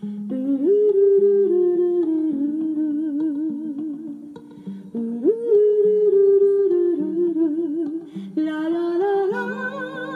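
A solo voice singing a wordless scat melody with vibrato over a soft instrumental accompaniment. The melody comes in two phrases, each opening with an upward slide.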